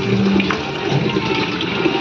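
Water running and splashing in a steady rush as a person is washed down.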